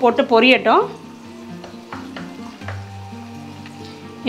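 Fennel seeds sizzling in hot oil in a clay pot, with background music, and a voice in the first second.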